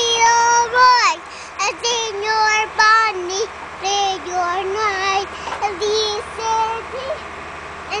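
A young girl singing a tune in a high voice: sustained notes broken by short pauses, with a quick downward slide about a second in.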